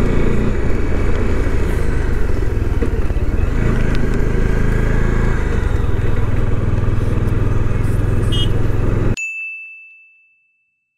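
Motorcycle engine running steadily at an even cruising speed, heard from the rider's seat along with a steady rush of noise. About nine seconds in, the sound cuts off abruptly and a single bell-like ding rings and fades away.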